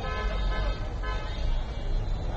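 Roadside traffic noise with a vehicle horn tooting briefly twice, near the start and about a second in, over a steady low rumble.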